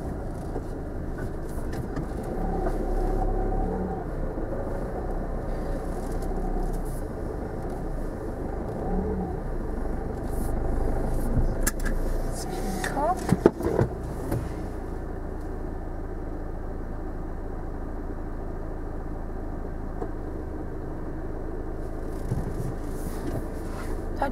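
A car engine idles inside the cabin, a steady low hum, with a few sharp clicks and knocks about thirteen seconds in.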